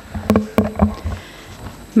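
Papers and hands handling things on a table right by a desk microphone: a few sharp knocks and rustles in the first second, then quieter shuffling.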